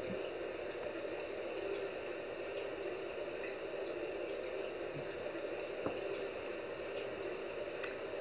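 Steady room noise: an even, unchanging hiss and hum, with a few faint soft ticks.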